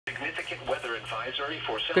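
A broadcast voice from a weather alert radio's small speaker, reading a National Weather Service weather message, thin and tinny over a low steady hum. A woman's voice starts right at the end.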